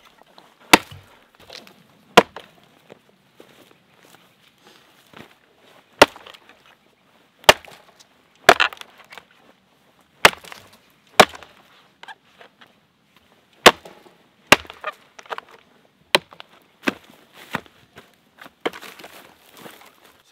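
Axe chopping into a weathered log: about a dozen sharp strikes, irregularly spaced one to a few seconds apart, each with a brief clatter of splitting wood.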